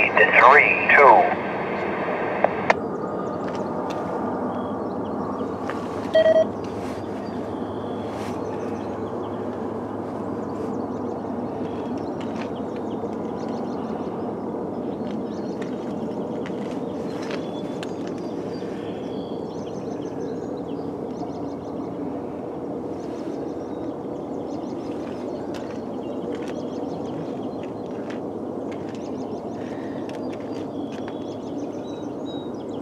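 The last words of an automated trackside defect detector's synthesized voice report, heard over a radio scanner, cut off sharply when the squelch closes about three seconds in. After that there is steady outdoor background noise with scattered faint high chirps and a short tone about six seconds in.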